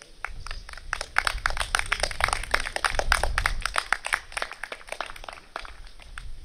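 A burst of hand clapping from a few people: dense, irregular sharp claps that build about a second in and thin out near the end.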